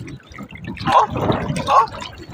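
Small splashes and lapping of shallow seawater at a pebbly shoreline as a baby's bare feet step in it.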